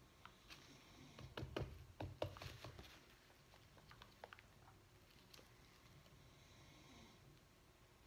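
Near silence, with a scatter of faint clicks and taps from a small plastic cup of resin being picked up and handled in gloved hands, bunched about one to three seconds in, with a few more after.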